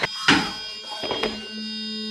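Electric toothbrush starting a moment in and then buzzing at one steady pitch while brushing teeth.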